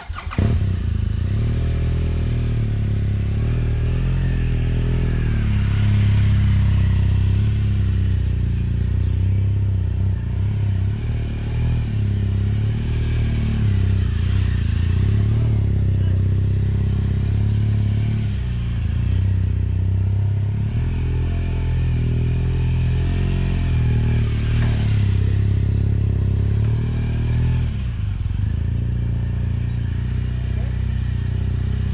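Motorcycle engine running close to the microphone, coming in suddenly about half a second in and then holding a steady low note that rises and dips slightly at times.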